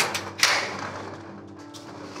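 Two sharp knocks about half a second apart, as a cut lock is worked off the latch of a steel roll-up storage-unit door, over background music.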